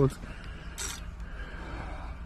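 Carp reel's clutch buzzing steadily as a large catfish takes line off the spool against the drag.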